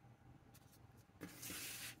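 Near silence, then about a second in a soft rustle of paper ink swatch cards being handled and gathered together.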